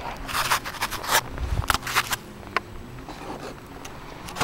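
Handling noise: rustling and scraping with a string of short sharp clicks and knocks, and no clear motor whine.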